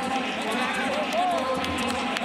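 Auctioneer's rapid bid chant and ringmen's calls over the steady chatter of a large crowd, while bids are being taken.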